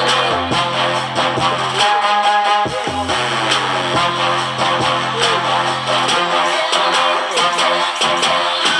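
Loud music with guitar and a heavy bass line, played through eight Rockville RV69.4A 6x9 full-range car speakers driven by a Rockville Atom P60 two-channel class D amplifier. The bass drops out briefly about two seconds in and again from about six seconds.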